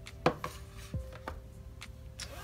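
A few light knocks and taps as a CD album's photobook and paper packaging are handled and set down on a marble countertop, the sharpest about a quarter second in.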